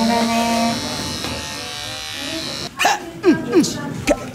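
A small electric pet clipper buzzing under background music. Near the end the sound cuts off suddenly and is followed by three short, loud falling squeals.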